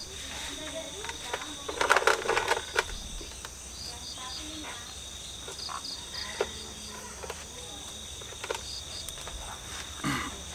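Crickets chirping in short trains of rapid high pulses that recur every few seconds, over a steady high insect trill. A few soft clicks and knocks sound now and then.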